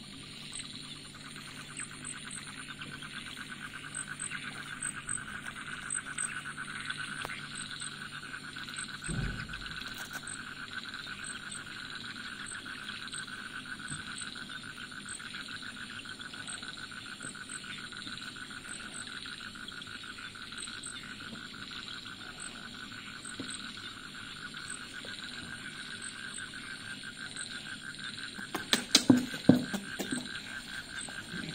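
A steady, rapid trill from calling frogs runs throughout. About a second and a half before the end comes a short burst of loud, sharp crackles as the plastic of a disposable diaper is handled and fastened.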